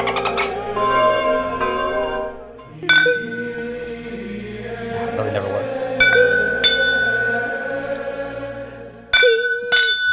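Background music fades out over the first couple of seconds. Then comes a series of about five sharp clinks of a whiskey bottle against a tasting glass, each leaving a bell-like ringing tone. The last two come close together near the end.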